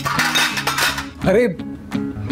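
Metal clinking of steel bowls and instruments being handled on a medical trolley for about the first second, over background guitar music.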